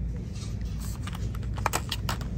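Light clicks and taps from handling a boxed set of press-on nails, several in quick succession in the second half, over a steady low hum.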